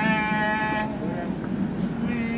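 A man's voice holding a long, steady, drawn-out note that fades out about a second in, over a low steady hum of street noise.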